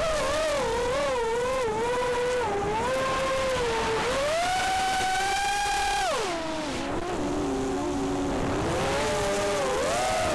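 Cobra 2204 2300kv brushless motors and propellers of an FPV racing quadcopter whining with the throttle, heard from the onboard camera with wind noise. The pitch wavers, climbs and holds high from about four seconds in, drops sharply about two seconds later, then climbs again near the end.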